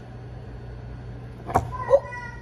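A knife cutting through a papaya knocks once on the wooden cutting board about a second and a half in, over a low steady hum. A voice says "ooh" just after.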